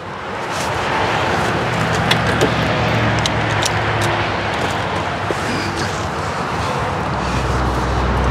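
Steady outdoor rushing noise, like traffic and wind, building up in the first second and holding, with a few light clicks and knocks as the Supercharger connector and its cable are handled.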